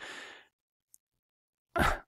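A person's breathy exhale, a sigh of about half a second that fades out, followed by near silence until speech resumes near the end.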